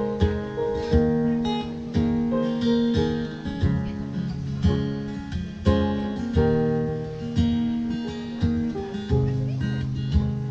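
Acoustic guitar played live, chords plucked and strummed, each struck sharply and ringing out before the next.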